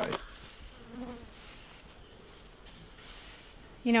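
Faint, steady high-pitched insect drone in the background, with a short, faint lower buzz about a second in.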